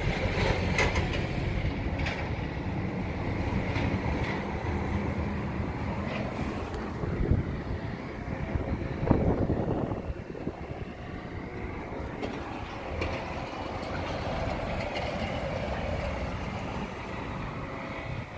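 A fairly steady low rumble of outdoor noise, with louder swells about seven and nine seconds in.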